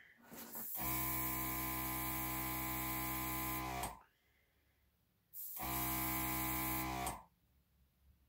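Airbrush running in two bursts, about three seconds and then just under two seconds, a steady motor hum under a hiss of air that start and stop together; the air is being forced into the black paint of an acrylic pour to bring up cells.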